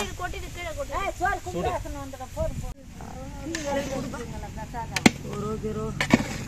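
People talking, with a short break near the middle, and a single sharp clank about five seconds in, typical of a metal spatula striking the rim of a large aluminium cooking pot.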